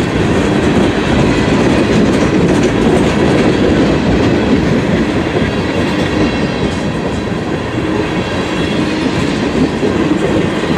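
Loud, steady sound of a freight train's tank cars rolling past close by, their steel wheels clicking and clattering over the rails.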